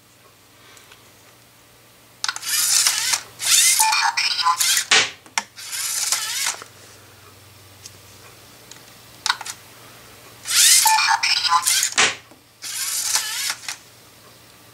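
LEGO Mindstorms EV3 SPIK3R robot running its tail-firing program: its servo motors whir in several short bursts, with two sharp cracks as the tail launcher fires projectiles.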